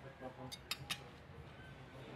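Cutlery clicking lightly against a plate as a piece of lamb tikka is picked up to be tasted: three short, sharp clicks in quick succession about half a second to a second in, over faint background voices.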